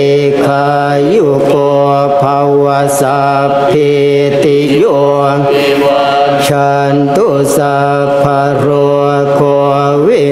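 A group of Buddhist monks chanting Pali in unison on a steady low monotone, with a few voices wavering slightly around the common pitch.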